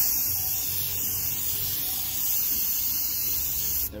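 CRC quick-drying electrical cleaner hissing out of an aerosol can in one long continuous burst that stops just before the end. It is being sprayed onto a hydraulic pump motor's armature to flush out oil.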